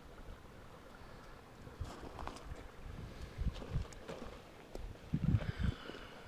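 Wind rumbling on the microphone, with scattered low thumps and rustles that are loudest about five seconds in.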